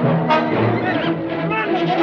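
Orchestral film score led by brass, driven by a low note repeating several times a second.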